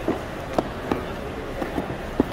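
Busy indoor hall ambience: a steady murmur with several short, light knocks at irregular intervals.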